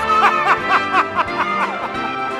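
A single high voice laughing in a quick run of short 'ha' syllables, each falling in pitch, about four a second, over the stage band's music.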